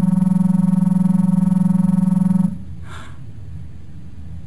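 Electronic science-fiction sound effect: a steady, buzzing synthesized tone, standing for the ship's computer processing an image, that cuts off suddenly about two and a half seconds in.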